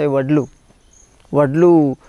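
A man speaking in two short phrases with a brief pause between, over a faint, steady, high-pitched insect trill.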